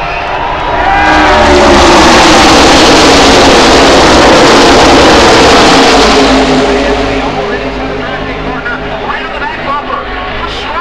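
The pack of NASCAR Nationwide Series V8 stock cars passing at full throttle on the opening lap: a loud mass of engine noise that swells in about a second in, with several engine pitches falling as cars go by, then dies away after about six seconds.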